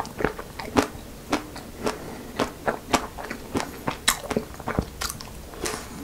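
Close-miked biting and chewing of a crunchy-coated strawberry ice cream bar: irregular crisp crackles and snaps, several a second.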